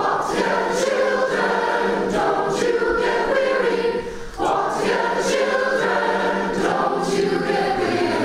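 Choir singing with sustained notes. About four seconds in, the sound dips briefly and picks up again, moving from an adult choir to a children's chorus.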